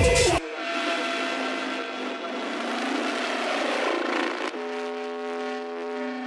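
Techno breakdown: the kick drum and bass cut out about half a second in, leaving a rushing noise swell and held synth tones with the low end filtered away. A new set of sustained synth chords comes in about two-thirds of the way through.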